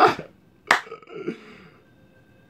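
A man laughing in short breathy bursts: one at the start and a sharper one under a second later, followed by a few softer voiced sounds.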